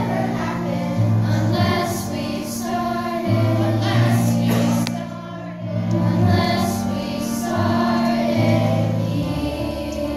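Children's choir singing a two-part song, with sustained low notes held beneath the voices. The sound softens briefly about halfway through, then swells again.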